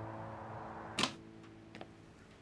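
Soft held music notes fade out, and about a second in a single sharp click sounds, followed by two fainter clicks near the end.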